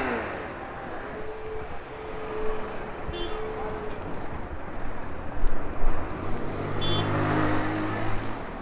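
Street traffic: passing motorbike and car engines over steady road noise, with a couple of short louder bumps a little past the middle.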